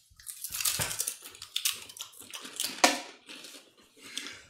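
Several people biting into and chewing crunchy chips: an irregular run of crisp crackling crunches.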